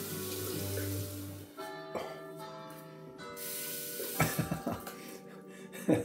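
Water running from a sink tap. It stops about one and a half seconds in, runs again briefly, and is followed by a few short splashes as shaving lather is rinsed off the face.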